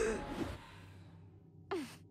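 A young woman's voice in a cartoon: the tail of a short vocal sound at the start, then near the end a brief sigh falling in pitch, as the character winces with her eyes shut.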